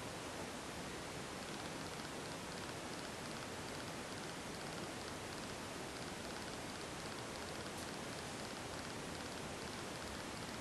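Steady, even hiss with no distinct events: the background noise of the recording.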